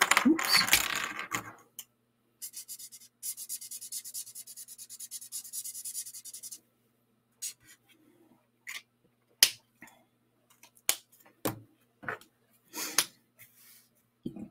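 Alcohol-ink marker (Stampin' Blends) scribbling on cardstock in quick strokes for about four seconds after a loud rustle at the start, then several separate sharp clicks and taps as markers are swapped and set down.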